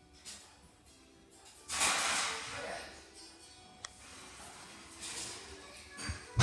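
A cat hissing: one loud, drawn-out hiss about two seconds in, lasting about a second, then a shorter, softer one about five seconds in, as two cats square off.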